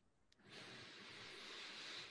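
Near silence, with a faint steady hiss coming in about half a second in.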